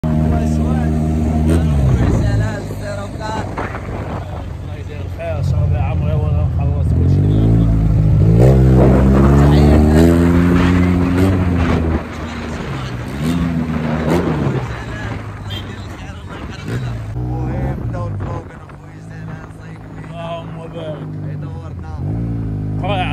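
Yamaha maxi-scooter engine running under way, its pitch rising and falling as it speeds up and slows, with low wind rumble on the microphone.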